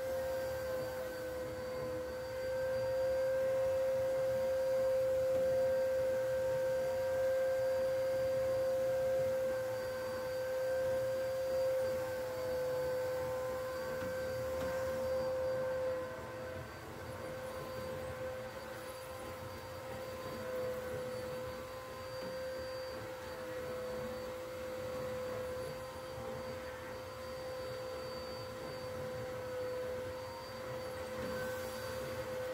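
Vacuum cleaner running with a steady motor whine, dropping a little in level about halfway through.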